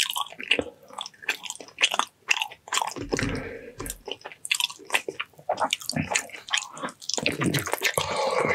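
Close-miked chewing and biting of braised ox feet, gelatinous skin and tendon on the bone: a rapid, uneven run of short mouth smacks and clicks throughout.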